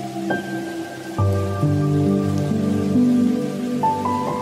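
Slow, soft instrumental music of held notes, with a new note or chord entering about every second, over steady rain.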